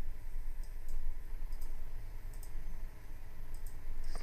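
A few faint computer mouse clicks, spaced about a second apart, over a steady low hum.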